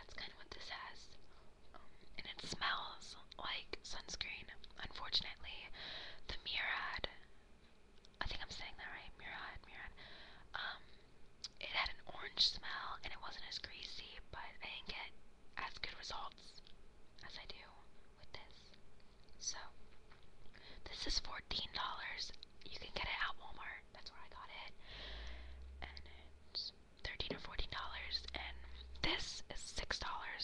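A woman whispering, talking on in soft breathy speech without voice.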